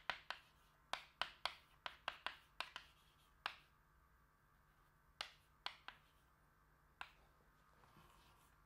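Chalk tapping and clicking on a blackboard as a formula is written: a quick, uneven run of sharp taps for the first few seconds, a pause, then a few scattered taps.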